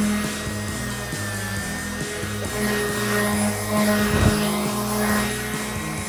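Electric random orbital sander running steadily on a wooden handrail, a constant motor hum, under background music with a stepping bass line.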